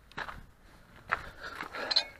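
Handling noise as a handheld camera is carried and set down on gravel: scuffs and rustles with a few short knocks, ending in a sharp click.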